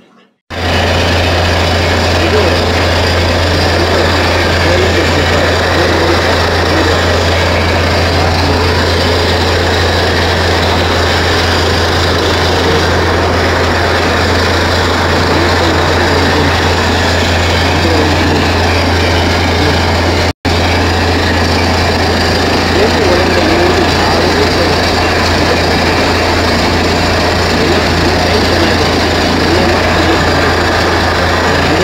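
Truck-mounted borewell drilling rig's engine running steadily and loud, with a constant low hum under it. The sound starts abruptly just after the beginning and breaks off for an instant about twenty seconds in.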